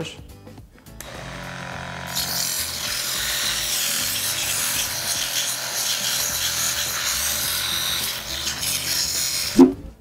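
Sandpaper pressed against a wooden cylinder spinning in a small BenKit benchtop lathe: a steady, rough hiss of sanding that starts about a second in and stops just before the end. This is the finishing pass that smooths the surface after shaping.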